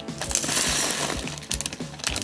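Rock salt poured from a plastic measuring cup onto ice cubes in a plastic zip bag: a grainy, clinking hiss lasting about a second.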